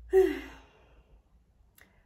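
A woman's short voiced sigh, about half a second long and falling in pitch, followed by quiet with one faint click near the end.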